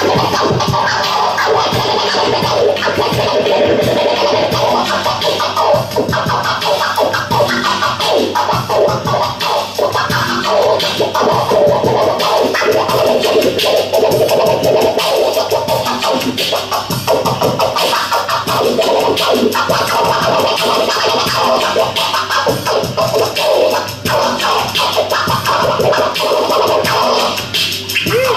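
DJ scratching a vinyl record on a turntable, cut through a mixer, over a hip hop beat.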